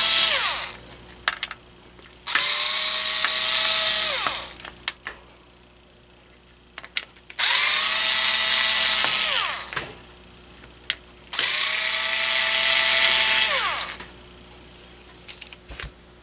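Cordless electric screwdriver backing screws out of a fan's control circuit board. It runs in bursts of about two seconds, four times, and each burst ends in a falling whine as the motor winds down. Light clicks sound between the runs.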